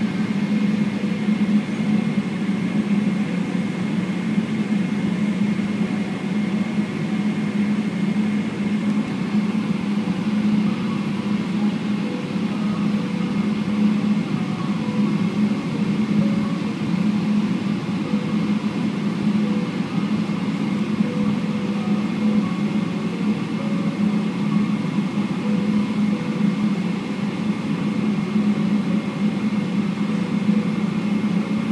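Steady cabin drone inside a Boeing 777-300ER standing on the apron with its GE90-115B engines idling and the cabin air running: a low hum with a thin high whine held above it.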